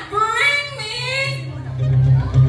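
A woman singing a short, high phrase into a microphone through the hall's PA, followed about one and a half seconds in by a steady low hum that carries on.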